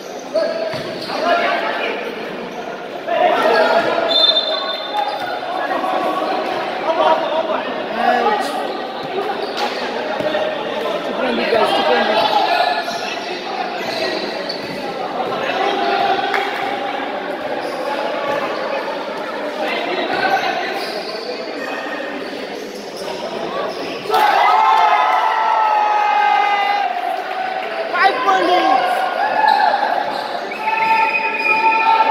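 A basketball being dribbled on an indoor court, its bounces mixed with players' and onlookers' voices calling out throughout, in a large hall.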